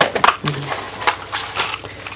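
Plastic jewellery boxes and cellophane-wrapped packets being shifted and set down by hand: a run of light clicks, clatters and crinkling.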